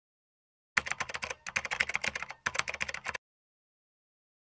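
Computer keyboard typing sound effect: rapid keystrokes in three quick runs separated by short pauses, starting about a second in and stopping about three seconds in, as if text is being typed into a search bar.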